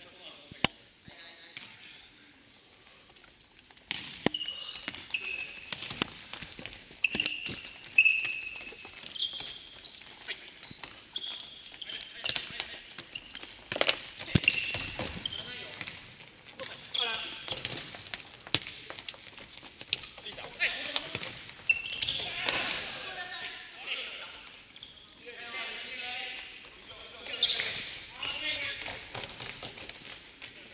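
A futsal ball being kicked and bouncing on a hardwood gym floor, the impacts echoing in the hall, with short high squeaks of sneakers on the floor and players shouting, the voices mostly in the second half.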